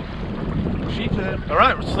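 Steady low rumble of wind buffeting the microphone on an open boat at sea. A man's voice calls out near the end.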